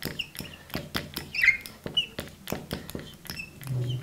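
Marker writing on a glass lightboard: quick irregular ticks and scratches of the tip with a few short, high squeaks.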